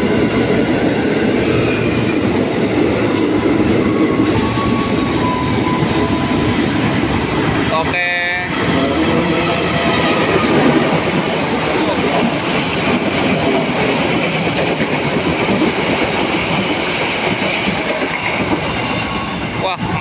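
Trains passing close by a station platform: a KRL electric commuter train rolls in, and a diesel locomotive hauling a parcel train runs through on the near track, with a loud steady rumble and wheel clatter.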